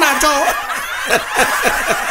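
Audience laughing, many overlapping chuckles, after the tail of a man's voice in the first moment.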